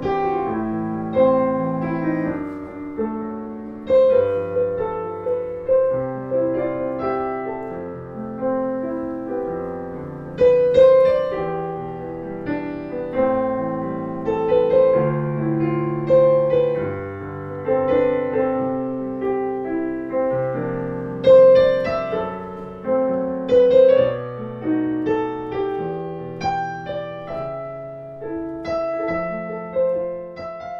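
Yamaha Clavinova CLP-430 digital piano played in its piano voice: a slow, flowing piece of melody over chords, each note sustained and slowly dying away.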